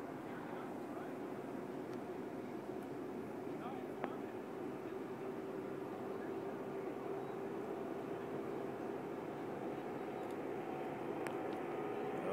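Jet engine noise from the four-engine Boeing 747 Shuttle Carrier Aircraft approaching low overhead: a steady rush with a constant low hum, slowly growing louder.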